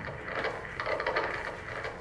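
The music dies away right at the start, leaving a quiet gap of soft, irregular clicks and shuffles: dancers' feet moving on the stage floor.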